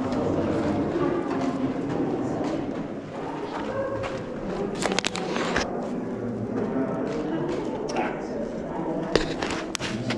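Indistinct chatter of several people talking in the background, too unclear to make out words, with a few sharp clicks about halfway and again near the end.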